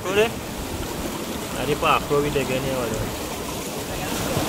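Two brief snatches of speech, at the very start and about two seconds in, over a steady rush of sea water washing on the rocks.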